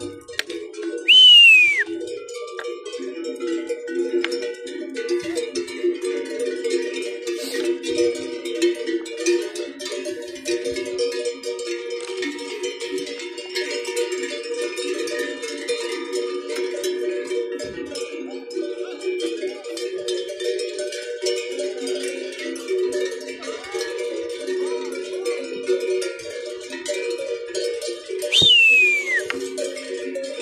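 Many cattle bells clanking unevenly together as a herd of cows walks along. A sharp, loud whistle falling in pitch sounds about a second in and again near the end: a herder whistling to drive the cattle.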